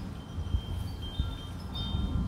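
Wind chimes ringing lightly: short, clear high tones sounding here and there, several pitches. Underneath is a low rumble of wind on the microphone.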